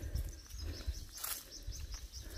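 Faint bird chirping in a quick, evenly repeated series, over a steady low rumble and a few soft steps or rustles.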